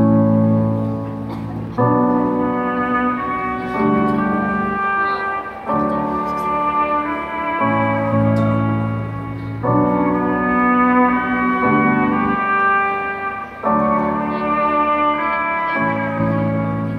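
Live band playing an instrumental passage of a stripped-back acoustic number, sustained chords changing about every two seconds with no singing.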